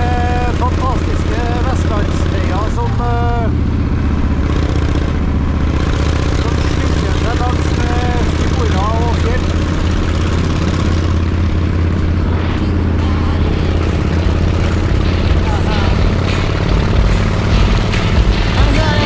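V-twin cruiser motorcycle engine running steadily at road speed, heard from on the bike; its note steps up slightly about three seconds in.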